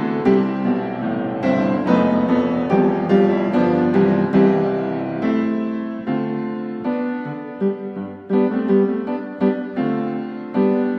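Background music of a solo piano playing a slow melody, each note struck and fading, several notes a second.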